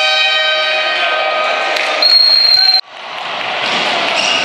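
Sports-hall noise under a steady pitched tone with several overtones. About halfway through, a loud, high referee's whistle blast sounds for under a second and is cut off abruptly, then the hall noise fades back in.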